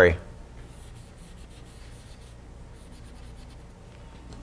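Chalk writing on a blackboard: faint, scratchy strokes in short spurts.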